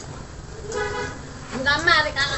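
A short, steady honk like a horn toot about a second in, then a person's voice, raised and wavering, near the end.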